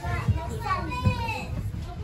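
Young children chattering and calling out in high voices, with no clear words, over a low steady rumble.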